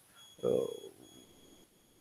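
A man's drawn-out hesitation sound "uh" about half a second in, followed by a quiet pause. Faint, thin, steady high tones sound during the first half.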